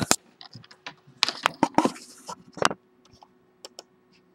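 Irregular tapping and clicking of a computer keyboard, a busy cluster in the first three seconds and then a few isolated clicks near the end, over a faint steady hum.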